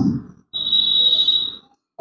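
A steady, high whistling tone lasting a little over a second, typical of feedback from a microphone and PA loudspeaker.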